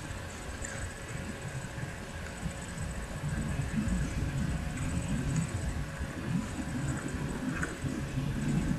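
Pencil strokes on a spiral-bound paper notebook, heard as an uneven low rubbing that grows somewhat louder about three seconds in.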